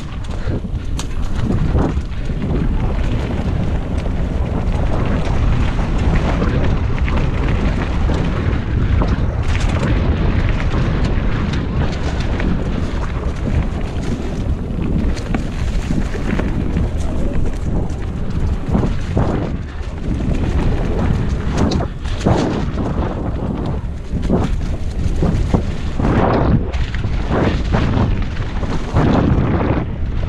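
Wind buffeting the microphone and a Giant Talon mountain bike's tyres rolling fast over a dirt, leaf-covered trail, with frequent knocks and rattles as the bike goes over bumps.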